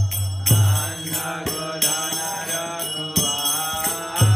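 Devotional mantra chanting sung over hand cymbals struck in a steady rhythm, with low drum beats.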